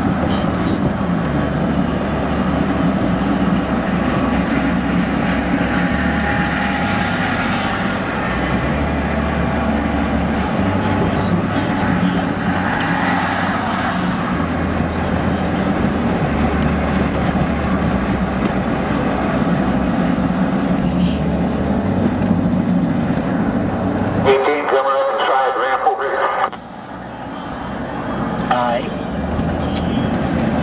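Steady engine and road noise inside a vehicle's cab at highway speed. The low rumble briefly drops away near the end, while a short wavering, voice-like sound comes through.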